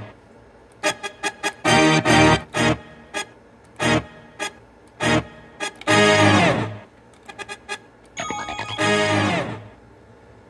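Short instrument samples previewed one after another from computer speakers: a string of brief pitched hits and notes, with longer ringing notes at about 2 s, 6 s and 9 s, each starting sharply and dying away.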